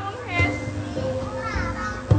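Gamelan accompaniment with a held ringing tone and low drum strokes, mixed with children's voices calling out.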